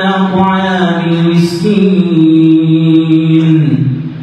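A man's voice chanting in Arabic through a mosque microphone: one long melodic phrase of held notes that step up and down in pitch, ending shortly before the next phrase begins.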